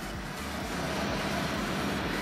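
Kia Sorento's 2.2-litre diesel engine idling with a steady low hum, under an even outdoor background noise.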